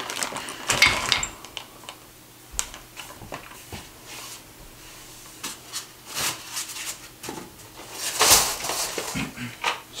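Crib parts being handled and pulled from their shipping box: scattered light clicks, clinks and knocks, with sheets of packing paper rustling and a louder rustle about eight seconds in.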